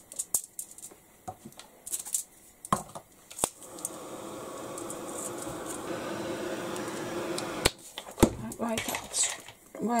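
A few sharp clicks and knocks of tools being handled, then a handheld craft heat tool runs for about four seconds with a steady whirring hum, drying the wet paint on a paper tag. It cuts off suddenly and is followed by more knocks of handling.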